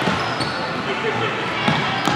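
Futsal being played on a hardwood gym floor: the ball and players' shoes knocking and squeaking on the wood, with a sharper knock near the end. Voices of players and spectators echo in the hall.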